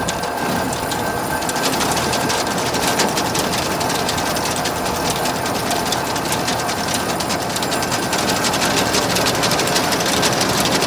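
Supreme 600T truck-mounted feed mixer running, its discharge chain-and-slat conveyor turning with a steady, rapid metallic clatter over the truck's running engine.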